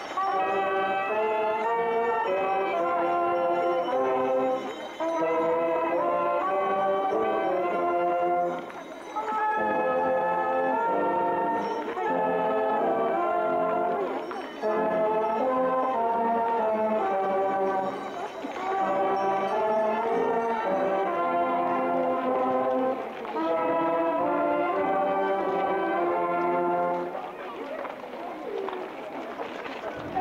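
Brass band playing a slow hymn, line by line, with short breaks between the phrases; the music stops a few seconds before the end.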